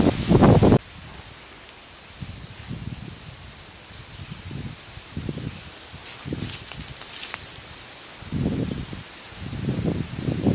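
Loud rustling of dry leaves and brush under a crawling soldier, cut off suddenly under a second in. Quieter, uneven rustling and handling of leafy vegetation follows, louder again near the end.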